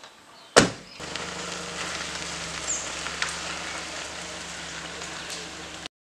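A car door slams shut about half a second in. About a second later the Suzuki Alto's small engine starts and idles with a steady low hum, which cuts off suddenly just before the end.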